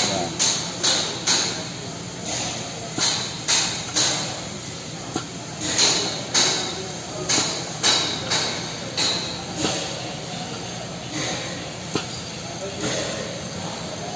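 Air-driven Maximator hydraulic pump stroking, each stroke a short hissing puff of air, about one and a half to two a second, as it builds pressure in the bolt tensioners.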